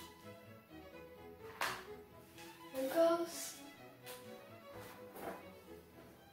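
Soft instrumental background music with held notes, broken by a few brief knocks and clatters of a paper coffee filter being set onto a glass cup, the loudest cluster about halfway through.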